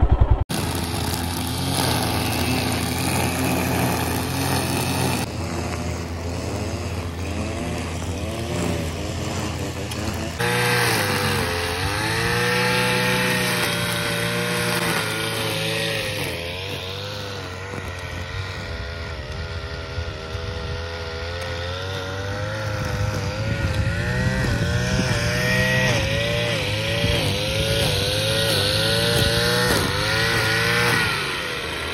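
Two-stroke backpack brush cutter engine running, steady for about the first ten seconds, then rising and falling in pitch again and again as the throttle is worked while cutting grass.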